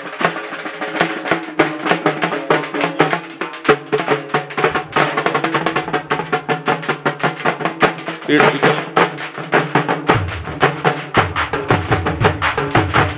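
A group of dappu frame drums beaten with sticks in a fast, dense folk rhythm, over steady held keyboard notes. A deep bass comes in about ten seconds in.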